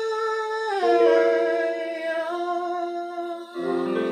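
A young man singing a cappella in long held notes. His pitch steps down about a second in, and the last note ends just before the close, when a different steady tone comes in.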